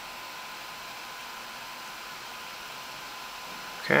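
Room tone: a steady low hiss with a faint, even high-pitched whine running under it, and no other event. A voice begins right at the very end.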